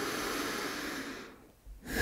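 A person's long breathy exhale, a sigh, that fades out about a second and a half in.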